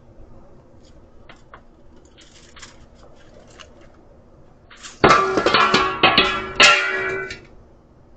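A loud clattering crash with ringing, about five seconds in, with a second hit just after and dying away over about two seconds, as something tumbles down wooden deck stairs.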